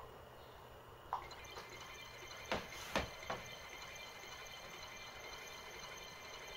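Faint computer-mouse clicks on an Atari 1040ST mouse, a short sharp click at the start and another about a second in. Then three light knocks of hands shifting onto a synthesizer keyboard, over a faint steady electronic hum.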